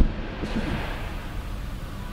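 The tail of a heavy car door shutting, the driver's door of a BMW 220i M Sport coupé, dying away in the closed cabin; the shut sounds thick. After it comes a steady low hush of the sealed interior.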